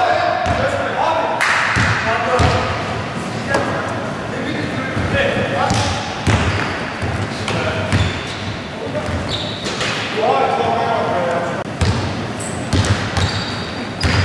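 Pickup basketball game in a gym hall: a basketball bounces repeatedly on the hardwood floor, sneakers squeak now and then, and players shout to each other, all echoing in the large room.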